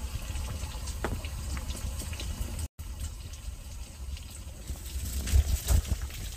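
Pot of yukgaejang (spicy beef soup) boiling on a portable gas stove, bubbling with faint pops over a steady low rumble. The sound cuts out for a moment near the middle, and a few low bumps come near the end.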